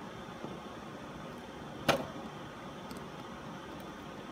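Steady low hiss with one sharp click about two seconds in, from a jumper wire's pin being pushed into a breadboard hole. No continuity beep sounds from the multimeter, so the two rows being probed are not connected.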